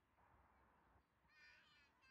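Near silence in the open air, with one faint bird call about one and a half seconds in and a fainter trace of another near the end.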